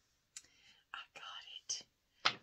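A woman whispering under her breath in short, breathy bursts, starting about a third of a second in.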